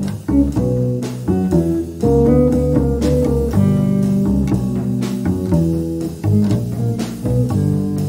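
Live small-group jazz: electric guitar playing notes and chords over a plucked upright bass line.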